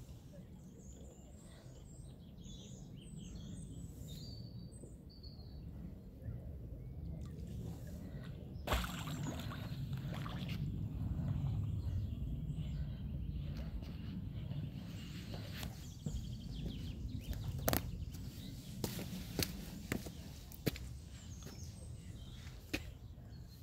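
Outdoor lakeside ambience: a steady low rumble that grows louder in the middle, with small birds chirping in the first few seconds and a handful of sharp clicks in the second half.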